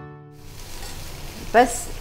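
Sweet corn kernels sizzling in melted butter in a steel kadai on a gas flame as they are stirred with a spoon: a steady hiss.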